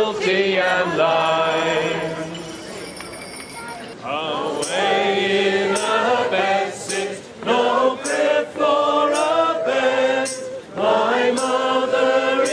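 A mixed group of carol singers singing together: a held closing note fades away in the first few seconds, and a new carol tune starts about four seconds in, sung in short phrases.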